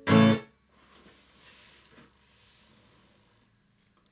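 A single loud final strum on an acoustic guitar, damped short after less than half a second to end the song. Two faint noisy swells follow, a second or so apart.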